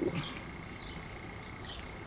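Faint, short, high bird chirps repeating about once every three-quarters of a second, over a faint steady high-pitched whine.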